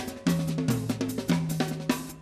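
Live drum solo: a quick, even stream of hand or stick strikes on drums and percussion. Low ringing notes underneath step between a couple of pitches.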